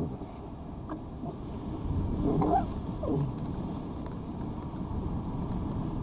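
A short animal cry about two and a half seconds in, bending up then down in pitch, over a steady low rumble.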